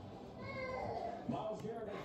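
A small child's high-pitched vocalizing, short rising and falling voiced sounds starting about half a second in.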